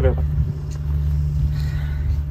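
A steady low mechanical hum with a continuous low drone, running evenly through a lull in the talk.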